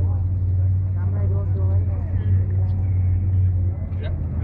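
Engine of a historic military vehicle running steadily with a deep hum, heard from inside its cab.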